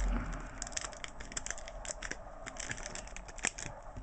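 Tape and plastic card sleeves on a taped-up stack of trading cards crinkling and rustling as fingers work the tape loose. Many small clicks and snaps run through it.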